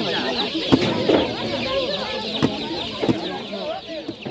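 Many boxed chicks peeping together, a dense unbroken chorus of short high chirps. People's voices and a few knocks from the boxes and baskets being handled sound underneath.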